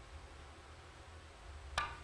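A three-cushion billiards cue striking the cue ball for a bank shot, heard faintly over a low steady hum of the venue, with a short, sharp sound near the end.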